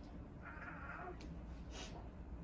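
A woman crying quietly. She lets out a short, thin, strained whimper about half a second in, then a quick sniff near the end.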